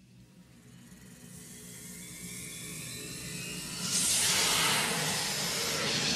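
Magical sound effect for a glowing spirit materialising: a sparkling hiss that swells steadily from near silence and is loudest from about four seconds in.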